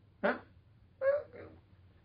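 Speech only: a man's short rhetorical "Huh?", then a second brief vocal sound about a second later.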